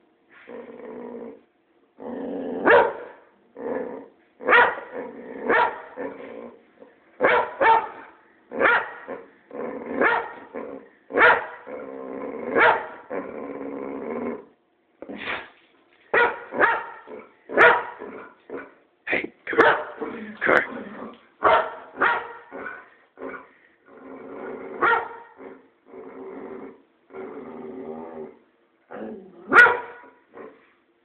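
Boxer dog barking at someone in irregular runs: short sharp barks mixed with longer drawn-out calls lasting a second or two, with brief pauses between.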